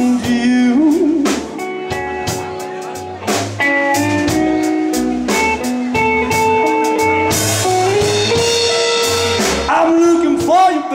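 A blues band playing live: amplified harmonica through a handheld microphone over electric guitar, electric bass and drums in a slow blues. The harmonica holds long notes, with wavering bends near the start.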